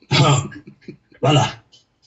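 A man's voice in two short bursts, about a second apart.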